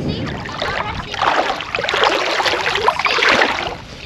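Shallow lake water sloshing and splashing around legs as someone wades, louder from about a second in until near the end.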